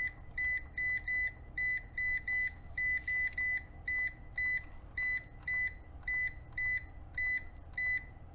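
EG4 6000EX-48HV inverter's control panel beeping once at each press of its down button, a quick run of about twenty short, same-pitched beeps, two to three a second, as the settings menu steps up to setting 28.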